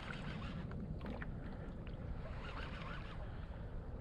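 Steady low water and wind noise around a kayak on open water, with a few faint clicks about a second in.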